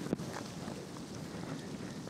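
Steady wind noise on the microphone.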